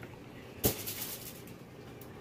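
A single sharp tap about two-thirds of a second in, then faint rustling, as cut zucchini slices are handled and set onto a foil-lined baking sheet.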